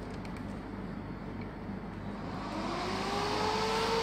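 Dell desktop computer's cooling fans running with a steady whoosh, then from about two and a half seconds in a whine rising in pitch as a fan spins up and levels off near the end: the machine powering up once the power-supply wire is bridged and its power light shows green.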